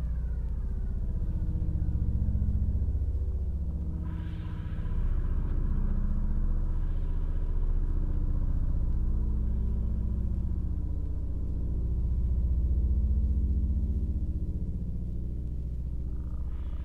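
Acousmatic electroacoustic music: a deep rumbling drone that swells and ebbs, with faint steady high tones. About four seconds in, a hissing upper layer enters suddenly and slowly fades.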